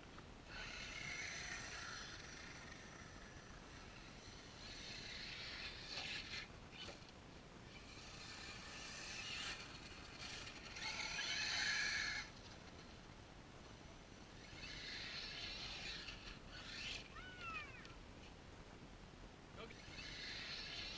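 HPI Savage Flux HP electric RC monster truck running across sand and gravel at a distance, faint. Its motor and tyres come and go in several swells, loudest a little past the middle, with a brief whine that bends in pitch near the end.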